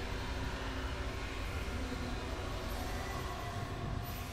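Rock music playing: a dense, steady wall of sound with a strong low end and no clear singing.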